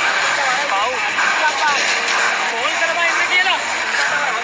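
Several people's voices calling and exclaiming over one another, over a steady loud rushing noise.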